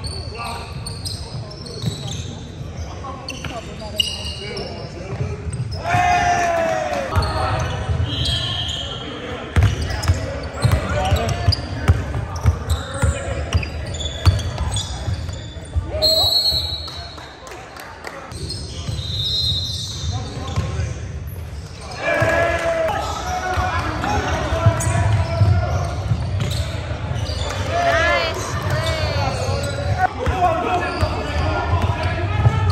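Basketball bouncing on a hardwood gym floor during play, with players' voices calling out, all echoing in a large gymnasium. There are scattered short knocks throughout and a brief lull about two thirds of the way through.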